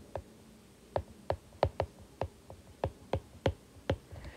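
Stylus tip tapping and clicking on a tablet's glass screen while handwriting: about a dozen short, irregular clicks.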